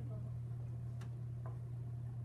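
Quiet classroom room tone: a steady low hum, with two faint short clicks, one about a second in and another half a second later.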